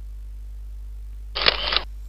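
A camera-shutter sound effect from a PowerPoint slide animation: one short burst about a second and a half in, over a steady low electrical hum.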